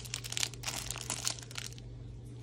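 Foil trading-card pack wrapper crinkling and crackling in the hands as it is worked open, a quick run of crackles that thins out near the end.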